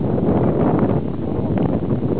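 Wind buffeting the microphone, a steady rumbling noise.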